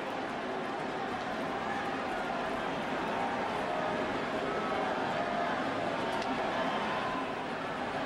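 Baseball stadium crowd noise: many voices talking at once in a steady murmur, with no single voice standing out.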